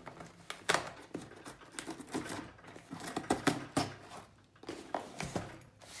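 Cardboard shipping box being handled while its packing tape is cut open with a small blade: irregular scraping and rustling, with a few sharp knocks as the box is moved and turned on the table.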